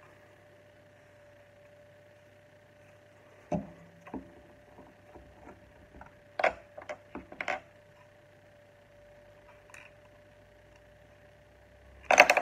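Plastic Lego pieces clicking and knocking as they are handled and worked apart or pressed together: a couple of sharp clicks about three and a half seconds in, a quick cluster between six and eight seconds in, and one more near ten seconds, over a faint steady hum.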